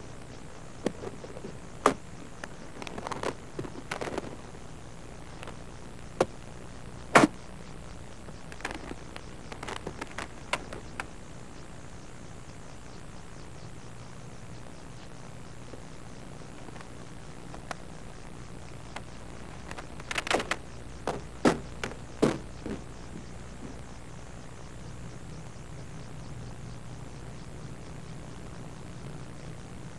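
Scattered sharp clicks and knocks, the loudest about seven seconds in and a cluster around twenty seconds in, over steady tape hiss and a low hum.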